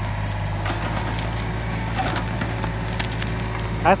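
Yanmar mini excavator's diesel engine running steadily while its bucket rips into the roots and brush at the base of a sweet gum tree, with scattered cracking and snapping of wood.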